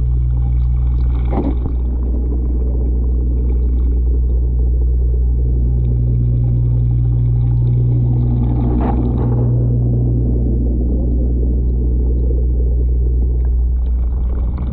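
Steady low mains hum of an aquarium pump running, carried through the tank, with a soft knock about a second and a half in and another near nine seconds.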